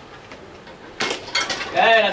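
A pitched baseball striking with a sharp crack about a second in, then a smaller knock, followed by a loud shout near the end.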